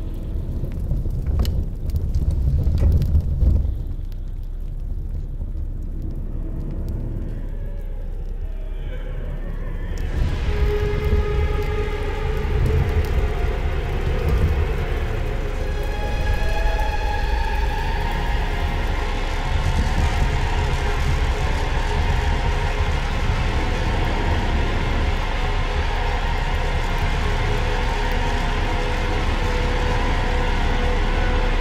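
Horror film soundtrack: a low rumble for about the first ten seconds, then an ominous droning score with long held tones swells in over it.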